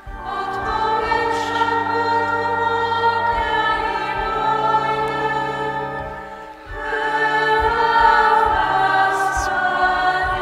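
Choir singing a slow hymn in long held phrases; one phrase fades and the next begins about six and a half seconds in.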